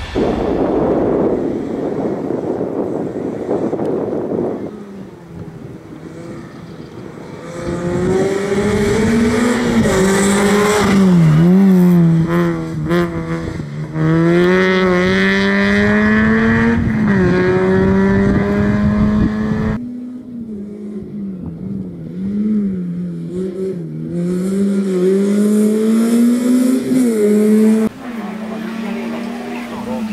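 A small racing hatchback's engine revving hard and easing off again and again as it is driven through a coned slalom, its pitch climbing and dropping with each burst of throttle and gear change. The first few seconds hold a noisy rush before the engine note comes in.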